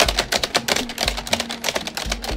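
Rapid typing on a computer keyboard, a quick irregular run of keystroke clicks, with a few deep thumps scattered among them.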